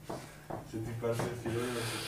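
Clothing rubbing and rustling against a clip-on lapel microphone as the wearer moves, with faint voice sounds between and a steady low hum underneath.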